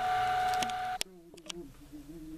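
A household water pump running with a steady whine that ends abruptly in a click about a second in. After the click only a faint low hum remains.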